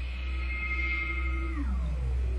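A held electronic tone of several pitches that slides steeply downward about a second and a half in, over a steady low hum.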